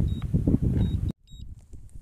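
Strong wind buffeting the microphone, with short high-pitched beeps from the DJI Phantom 4 Pro's remote controller warning of a weak signal. About a second in, the wind noise cuts off abruptly, leaving faint low noise and a few more beeps.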